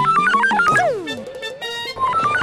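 Background music: a quick synthesizer melody of short notes hopping up and down, with a falling glide about a second in.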